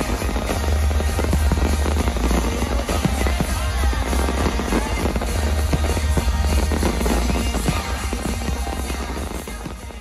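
Nighttime fireworks show heard live from the crowd: many rapid bangs and crackles of fireworks over loud show music from speakers, with a deep rumble throughout.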